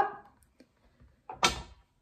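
A kitchen knife set down on a tabletop: a faint tap, then one short, sharp clack about one and a half seconds in.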